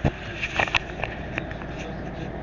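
A few short, sharp clicks and knocks, about half a dozen in two seconds, over a low steady hum.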